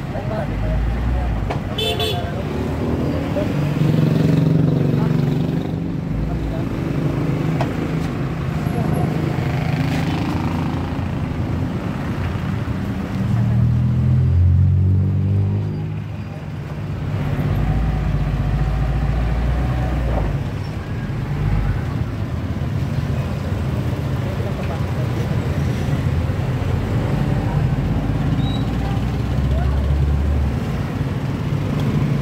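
Street traffic: small motorcycle and tricycle engines running and passing close by, the loudest passes about four seconds in and near the middle, with a brief horn toot early on and voices in the background.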